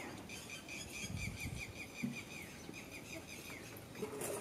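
A bird calling nearby: a fast run of short, falling chirps, about four a second, that stops shortly before the end.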